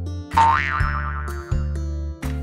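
A cartoon boing sound effect about a third of a second in, its pitch sweeping up and then wobbling back down over about a second, over children's background music.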